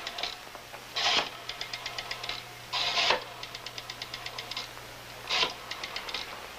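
Rotary telephone dial being turned: three times the dial is wound round with a short ratcheting rasp, and each time it spins back with a quick, even run of clicks as it pulses out the digit.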